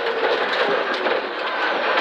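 Rally car at speed heard from inside the cabin, with loud steady road and tyre noise. The engine note falls steadily as the car brakes for a square right turn, and there are a few scattered sharp ticks.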